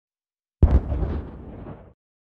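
Logo-reveal sound effect: a sudden deep boom about half a second in, a second hit right after it, then a rumbling decay that cuts off just before the end.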